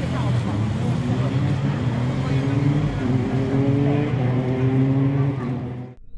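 Engine of a Honda Civic Type R rally car running steadily near idle, with voices in the background; the sound fades out near the end.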